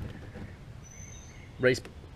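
Faint outdoor background noise with a single thin, high whistled note from a distant bird, about a second in.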